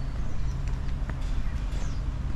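Outdoor city street ambience: a steady low rumble with a few faint clicks and a short high chirp near the end.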